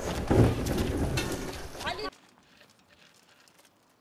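Loud, indistinct voices of people for about two seconds, cut off suddenly; then near-quiet with a few faint ticks.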